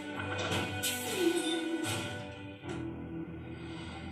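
Cartoon soundtrack playing from a TV across the room: dramatic music with four sudden sound-effect hits, the first about half a second in and the last under three seconds in.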